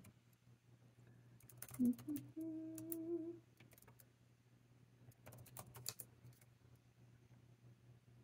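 A woman hums a closed-mouth "mm-hmm" about two seconds in, among a few faint scattered clicks and taps, with a cluster of clicks just after five seconds.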